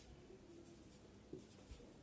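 Faint strokes of a marker writing on a whiteboard, with two small taps in the second half.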